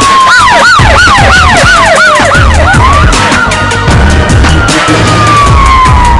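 News-intro music with a heavy bass beat, overlaid with police siren sound effects. A fast yelping siren warbles about three to four times a second for the first two and a half seconds, over a slower wailing tone that falls, rises and then falls again.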